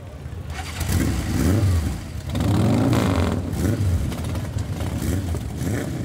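Motorcycle engines running and revving. The sound fades in over the first second, then the engine pitch rises and falls.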